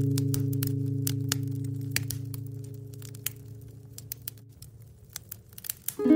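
A solo guitar chord ringing out and slowly fading away, over the crackling and popping of a wood-burning stove fire. As the chord dies near the end, the fire's sharp pops stand out on their own.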